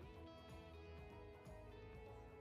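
Quiet instrumental background music, guitar-led, with sustained notes changing pitch every second or so.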